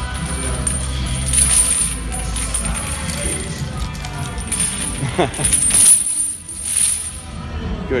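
Heavy metal chains worn as added weight clinking and jangling during push-ups, over background music.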